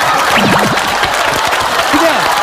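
Studio audience applauding, with a brief shout or laugh about half a second in, over background music.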